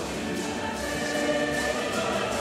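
A church choir singing a hymn in several voices, with long held notes.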